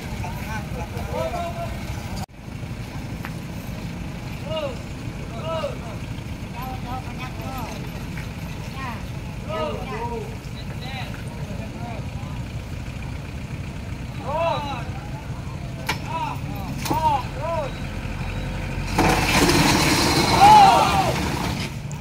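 A tow truck's engine runs steadily as it pulls the overturned minivan by a chain, under the scattered voices of onlookers. Near the end comes a louder burst of noise with raised voices.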